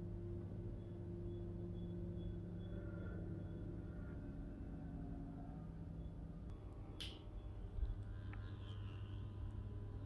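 A single sharp knock about seven seconds in, followed by a dull thump, over a steady low hum. The knock could be the corrugated metal roof ticking as it reacts to the heat of a hot day.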